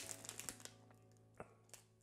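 Near silence: a handheld snack bag crinkles faintly in the first half second, then one faint click about a second and a half in, over a low steady hum of room tone.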